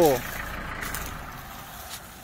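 Low, steady engine noise of a farm tractor running, fading slightly toward the end. A man's voice cuts off just at the start.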